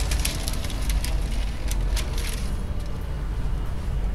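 Baking paper crinkling and a metal baking tray scraping as the tray of cookies slides into a commercial deck oven, over a steady low hum. The crackling stops about two and a half seconds in, leaving only the hum.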